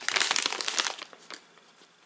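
Crinkly plastic snack bag crackling as it is turned over in the hand: a dense burst of crinkles in the first second, then a few small crackles as it settles.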